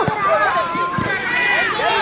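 Many overlapping voices shouting and calling out from spectators and young players at a children's football match, with two dull thumps about a second apart.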